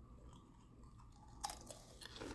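Near silence: a faint low room hum, with a few small sharp clicks about one and a half seconds in.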